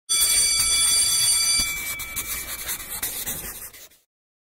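Animated logo-intro sound effect: a bright, high, steady ringing tone over a scratchy rubbing noise. The tone stops after about a second and a half, and the scratchy noise fades out just before the end.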